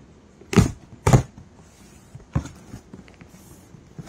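A cardboard shipping box being handled and opened: two short, sharp scraping sounds about half a second apart near the start, then a fainter one past the middle and a few faint clicks.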